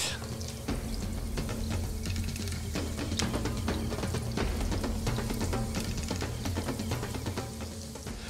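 Carrot sticks and sliced onion frying in hot oil in a pan, with scattered crackles and spits of sizzling oil under steady background music.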